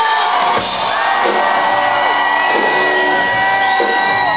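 Live rock band playing in a hall: long held notes that bend up and down, with whoops and shouts from the crowd.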